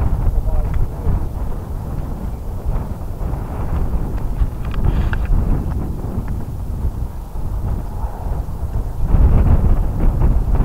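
Wind buffeting the microphone: a loud, gusting low rumble that swells strongest near the end.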